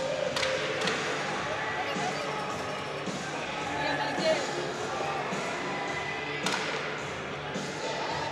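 Ice-hockey arena ambience during a stoppage in play: crowd chatter and faint music, with a few sharp knocks, two close together near the start and one later.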